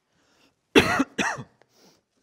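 A man coughing twice, loudly and close to a podium microphone, the two coughs about half a second apart.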